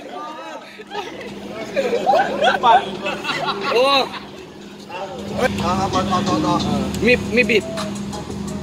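Several men's voices talking and calling out casually over a steady low hum. A low rumble joins under the voices about five seconds in.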